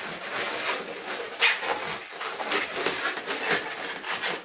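Latex modelling balloons squeaking and rubbing against each other as they are twisted and wrapped together by hand: a run of short, irregular squeaks, the loudest about one and a half seconds in.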